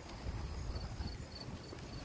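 Night insects chirping in a steady, even high-pitched pulse, a few chirps a second, over a low rumble from wind or handling.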